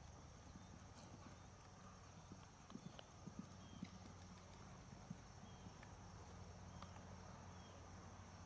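Faint, muffled hoofbeats of a horse cantering on a sand arena and taking fences, with a few soft thuds bunched around the middle.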